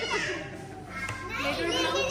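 Indistinct children's voices and chatter in a large room, dipping briefly in the middle before a child's voice picks up again.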